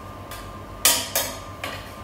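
A ladle knocking against the inside of an enamel soup pot while scooping: four short clinks, the two loudest about a third of a second apart near the middle.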